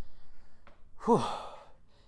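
A man's breathy "whew", a sigh of relief about a second in that falls in pitch as it trails off.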